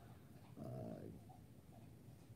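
A man's short, drawn-out hesitation sound, "uh", about half a second in; otherwise faint room tone.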